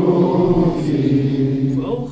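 A group of men chanting together in unison, many voices blended into one dense, sustained religious chant that tails off near the end.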